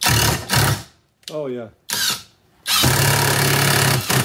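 Brushless cordless impact wrench on its lowest torque setting, with a hex-bit adapter, driving a long screw into a wooden beam. It runs in two short bursts, then in one steady run of about a second and a half near the end, its impact mechanism hammering with a low, even buzz.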